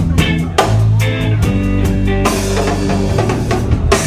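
A live rock band playing an instrumental passage: electric guitar, electric bass and drum kit, with steady drum hits under held bass notes and cymbals washing in from about halfway through.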